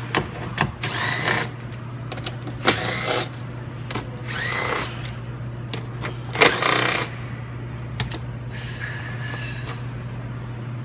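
Cordless impact driver backing out 8 mm screws from plastic HVAC ductwork in several short runs of about half a second each, each rising in pitch. A fainter run comes near the end.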